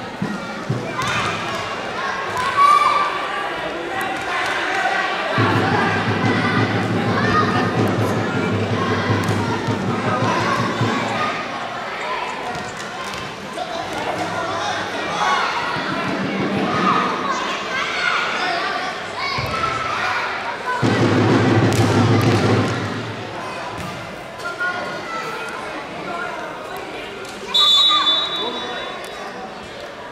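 Futsal ball being kicked and bouncing on a wooden sports-hall floor, sharp knocks echoing in the hall, over voices shouting on and around the court. A short, high whistle sounds near the end.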